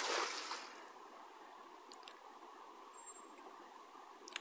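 A cast net slaps down on the river surface with a splash right at the start, dying away within a second. Then a steady wash of water noise.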